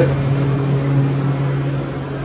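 A steady low machine hum, one even drone with a faint hiss above it, easing off slightly near the end.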